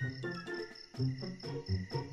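Night-time cricket chirping, a quick regular high-pitched pulse, over quiet background music of short notes.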